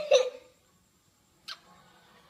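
A young girl's sob: a short, pitched, hiccuping catch of breath that dies away about half a second in. A single faint click follows about a second and a half in.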